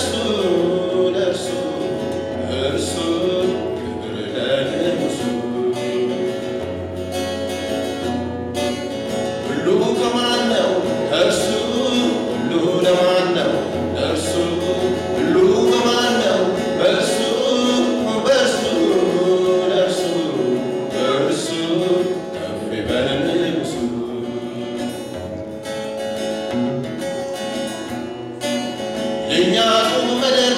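Gospel worship song: singing over instrumental accompaniment with a steady beat.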